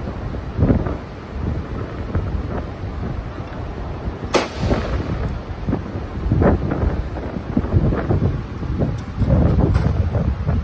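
Low rumbling handling noise with irregular knocks, and one sharp metallic clank about four seconds in, as a turbocharger is worked on and clamped in a bench vise.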